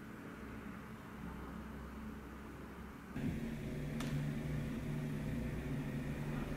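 Faint steady low hum and hiss, stepping up to a louder hum about three seconds in, with a single sharp click about a second later.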